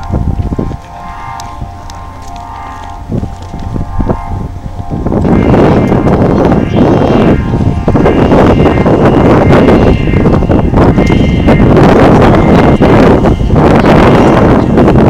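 Loud, gusty rushing of air starts suddenly about five seconds in, after a quieter stretch of low rumble with faint steady tones.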